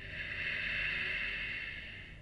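One long, slow, audible breath, loudest about a second in and fading near the end, taken while holding a yoga pose, over faint soft background music.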